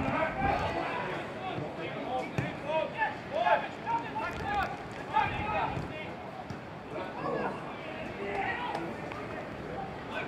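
Footballers shouting and calling to one another across an open pitch, with a sharp thud or two from the play.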